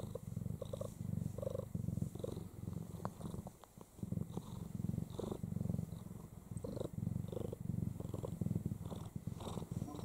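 Snow Lynx Bengal cat purring steadily in a pulsing rhythm with her breaths, with a brief pause a few seconds in; the queen is in labour.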